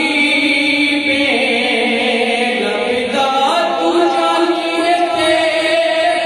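A man singing a naat, a Punjabi devotional song in praise of the Prophet, in long, drawn-out notes that step to new pitches about a second in and again a little after three seconds.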